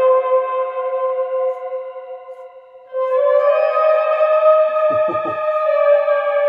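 Trumpet played through a shimmer reverb pedal and guitar amp: a long held note fades away under a shimmering, pitched-up reverb wash. About three seconds in a second sustained note enters, stepping up slightly in pitch, and is held through the shimmer.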